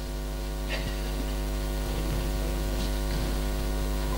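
Steady electrical mains hum from a public address system, a low buzz with many evenly spaced overtones coming through the microphone and loudspeakers.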